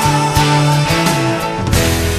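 Hard rock band recording with electric guitar, bass, keyboards and drums, in a passage without singing. The bass holds low notes while the drums keep a steady beat.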